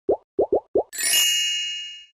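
Animated-logo sound effect: four quick plops, each sliding up in pitch, followed by a bright ringing chime that fades away over about a second.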